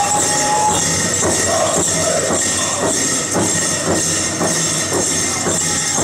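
Powwow drum group playing a steady drumbeat, about two beats a second, with singing and a constant jingling of dancers' bells. A short, thin high tone sounds at the very start.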